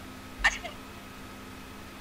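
A single short vocal sound, a quick 'ah', about half a second in, then a pause filled only by a faint steady hum.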